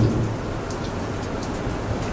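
Steady, even background hiss of room and recording noise, with no speech.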